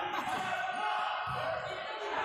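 Futsal ball thudding on the indoor court about one and a half seconds in, over the steady chatter of spectators.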